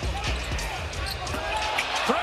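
A basketball dribbled repeatedly on a hardwood court, with short sneaker squeaks and steady arena crowd noise.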